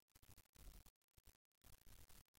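Near silence: faint room tone that keeps dropping out.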